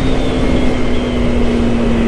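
2019 Yamaha R3's parallel-twin engine running at a steady cruise on its stock exhaust. The engine note sinks slightly in pitch, with wind rushing over the microphone.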